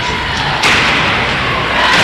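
Ice hockey play along the boards: a scraping hiss from skates and sticks on the ice that starts suddenly about half a second in and runs on steadily.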